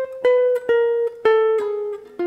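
Hollow-body archtop jazz guitar playing single picked notes in a clean tone, about one every half second, each ringing until the next and stepping down in pitch: a descending line from a lick over a D half-diminished chord.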